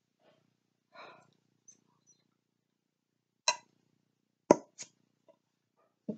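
A few sharp knocks and clicks from a glass candle jar being handled and set down, the loudest a low thump about four and a half seconds in.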